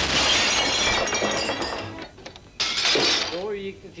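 A sudden loud crash of shattering glass, with pieces tinkling and clattering down for about two seconds. A man's voice comes in near the end.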